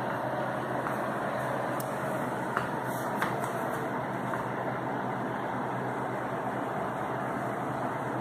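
Steady background noise, an even hiss at a constant level, with two faint clicks about three seconds in.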